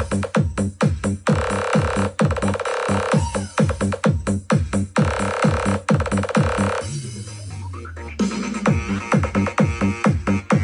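Electronic dance music played through a Hopestar P49 portable Bluetooth speaker, with heavy bass kicks that drop in pitch, about four a second. About seven seconds in the beat drops out for a second under a rising sweep and a held bass note, then comes back in.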